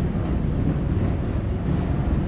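Wind-driven millstones of a tower windmill turning and grinding wheat, a steady low rumble. They run evenly, with no strain or creaking.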